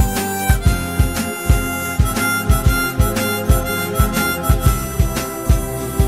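Instrumental break in a pop song: a sustained lead melody in long held notes over a steady drum beat, with no singing.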